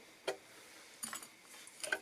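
A few faint clicks and small metallic ticks from spool clamps being handled: wing nuts being turned on threaded steel rods. One click comes a quarter second in, a small cluster with a faint high ring about a second in, and another click near the end.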